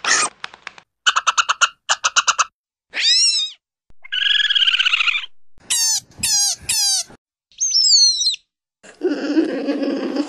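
A string of short cartoon animal vocal sound effects, one after another with brief silences between them. First come rapid chattering squeaks and a warbling call, then three high falling squeals, and near the end a lower, rougher call.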